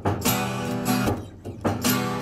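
Steel-string acoustic guitar strummed in a song, with strong strokes near the start and again near the end and a brief lull between.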